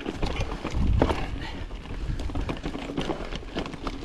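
Mountain bike riding down a rocky trail: tyres clattering over loose stones, with irregular knocks and rattles from the bike and a heavier jolt about a second in, over a low rumble of wind on the microphone.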